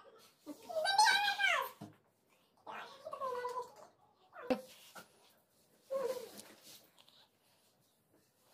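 A girl's high-pitched squealing and whining cries mixed with laughter, four separate cries; the first and longest rises and then falls in pitch.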